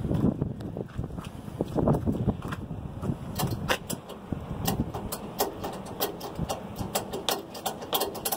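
A ratchet strap's ratchet being worked: a run of sharp, irregular clicks from about three seconds in, after some rustling handling noise. The strap is cinched around a stuck spin-on diesel fuel filter to break it loose.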